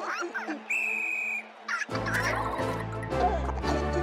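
Cartoon soundtrack: a short, steady, high whistle-like tone about a second in, then background music starts about two seconds in and carries on.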